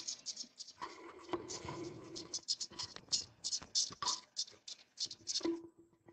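Recorded song of the periodical cicada Magicicada septendecula, played back through a video call: a rapid, uneven series of ticks that sounds a little like a katydid.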